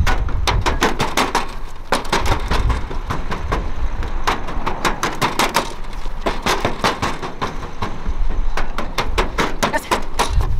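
Quick footfalls on aluminium bleacher steps, a run of sharp clanking steps about three or four a second, uneven in rhythm as she climbs and descends.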